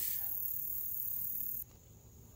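Steady, high-pitched chorus of insects that cuts off suddenly about one and a half seconds in.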